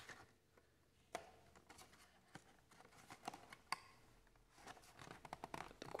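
Mostly near silence, with a few faint clicks and scrapes of fingers handling a small cardboard presentation box, the small sounds growing more frequent near the end as the lid is worked open.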